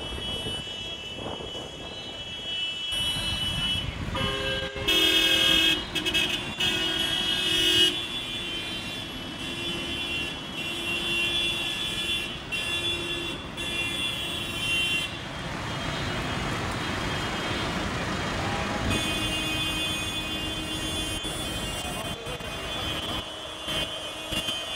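Vehicle horns sounding in long, held blasts over the running engines of road traffic and tractors; the loudest blasts come about five to eight seconds in, with more held horn notes later.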